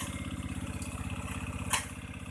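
Motorcycle-type engine of a homemade four-wheel buggy running steadily at low speed, its firing pulses even, with one short click near the end.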